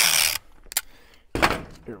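Tape being ripped off a roll in one quick, loud tear, followed by a second, heavier noisy burst about a second and a half in.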